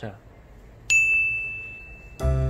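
A single bright bell ding struck about a second in, its high tone ringing on and slowly fading.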